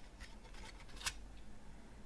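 Faint handling noise of a CD and its cardboard sleeve being turned in the hands: light rustling with a small click about a second in.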